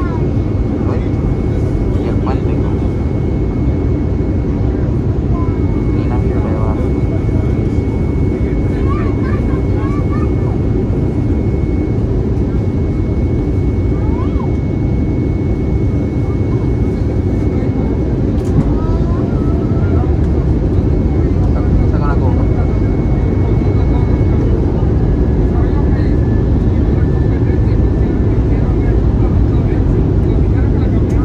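Steady cabin noise of an Airbus A320neo on approach, heard from a window seat beside the engine: a deep, continuous rumble of engine and airflow, growing slightly louder past the midpoint. A faint high steady whine rides over it for about twelve seconds, with faint passenger voices underneath.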